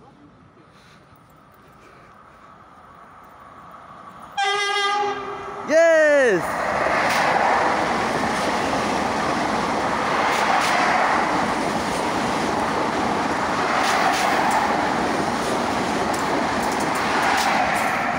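An RER D double-deck commuter train blows its horn twice, very loud, about four and six seconds in, the second blast bending down in pitch as it comes past. It then runs by close at speed, a long steady rumble with wheel clatter.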